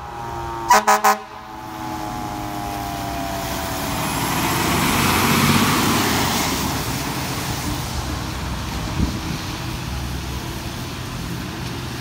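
Fire truck air horn gives three short blasts about a second in, while a siren winds down in pitch over the next few seconds. Then the truck's engine and tyres on the wet road swell as it passes close, loudest around the middle, and fade away. A single sharp click comes near the end.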